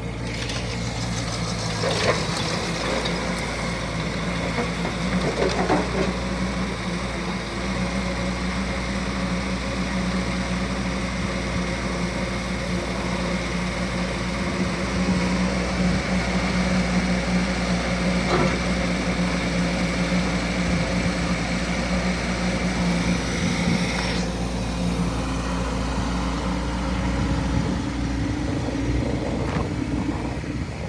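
Bobcat E10Z mini excavator's diesel engine running steadily while the machine works its boom, bucket and tracks. A high steady whine sits over the engine and cuts off about three-quarters of the way through, and there are a few short knocks.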